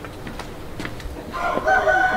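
A rooster crowing, one long call starting about a second and a half in, after a few light knocks.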